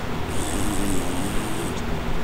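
A woman's quiet, wavering whimper through closed lips, lasting about a second and a half, over a steady background hiss.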